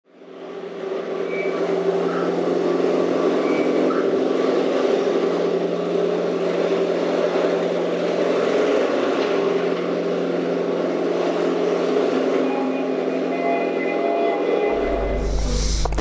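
Steady droning soundbed under a channel intro, fading in over the first second and holding several steady tones under a noisy haze. A low hum comes in near the end.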